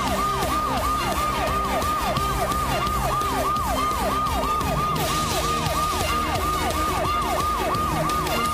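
A siren sound effect in a news-show bumper: a rapid repeating wail, each cycle falling from high to lower pitch, about three a second, over a steady low music drone.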